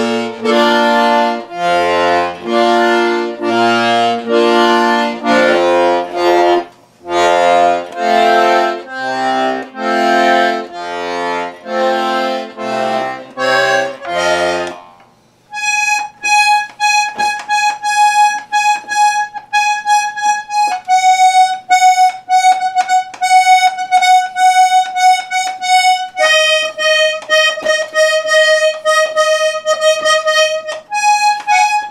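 Hohner piano accordion played with full chords over bass notes for about fifteen seconds. After a brief pause it switches to single high notes pulsed rapidly, each held for several seconds and stepping lower twice.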